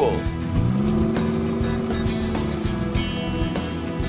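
Engine sound effect for a small truck straining to pull free of mud. It revs up in the first second, then holds a steady pitch for about two and a half seconds, over background music.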